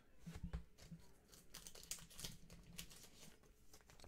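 Faint handling noise of a trading card being moved in the hands, with light crinkling and small scattered clicks.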